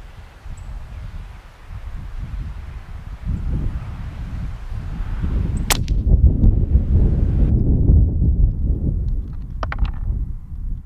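A suppressed .22 LR rifle shot, a single sharp crack a little past halfway, over a steady low rumble of wind on the microphone that grows louder in the second half. Faint clicks follow near the end.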